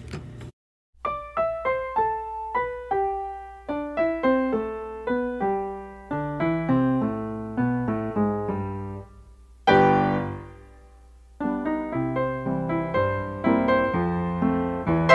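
Background solo piano music: a steady run of single notes, each fading away, with a louder chord about ten seconds in followed by a short lull.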